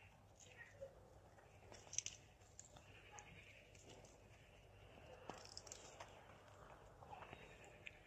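Near silence with a few faint snips of garden pruning shears cutting rose stems: a pair about two seconds in, and several more later.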